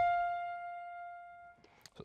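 A piano-type patch on a Yamaha Montage synthesizer, likely the CFX grand piano layered with FM electric piano: a single held note rings out and fades away over about a second and a half, followed by a few faint clicks.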